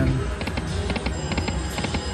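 Magic Pearl slot machine spinning its reels: a rapid run of short electronic clicks and ticks from about half a second in until near the end, over a steady low casino hum.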